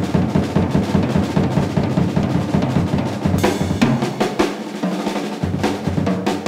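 Drum kit playing a fast, dense run of strokes on the drums, with cymbals washing in a little past halfway.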